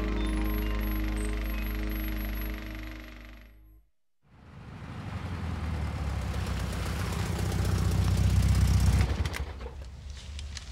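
A short music sting that fades out about four seconds in. After a moment of silence, a classic Volkswagen Beetle's air-cooled engine runs with a clattering rumble, grows louder, and drops off sharply about nine seconds in.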